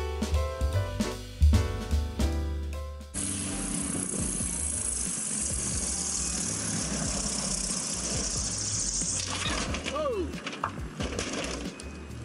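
Background music for about three seconds, then the steady running noise of a single-engine light plane on a grass takeoff roll, mixed with wind on the microphone. About nine seconds in the noise stops abruptly as the plane noses over onto its back, and a voice cries out with a falling 'oh'.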